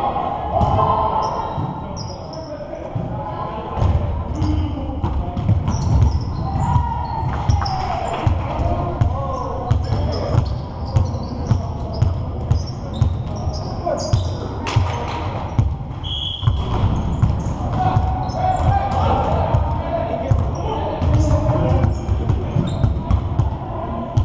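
Basketball game on a hardwood gym floor: a ball bouncing again and again, short high squeaks of sneakers, and players' indistinct shouts, all echoing in the large hall.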